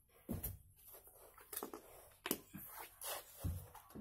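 Scattered light knocks and clicks, about six in a few seconds, from hands working at the top hanging rail of a sliding wardrobe door.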